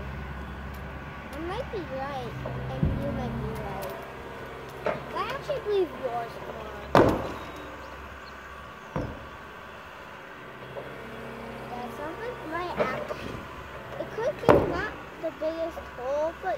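John Deere excavator running steadily while its bucket knocks into the concrete silo, with a few sharp impacts; the loudest come about seven seconds in and near the end.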